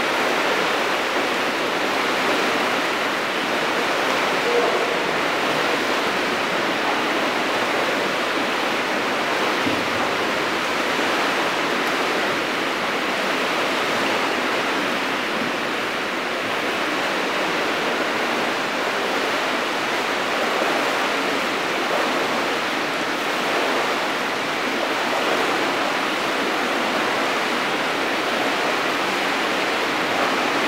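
Steady splashing of breaststroke swimmers racing in a large indoor pool, blended into the echoing noise of the pool hall.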